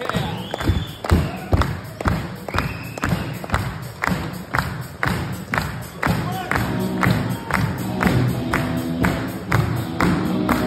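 Audience clapping in time, about two claps a second, along with a live band of drums and electric guitars; sustained pitched guitar notes come in a little past the middle.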